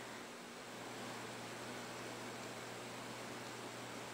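Faint steady hiss with a low hum underneath: room tone and recorder noise, with no distinct sound events.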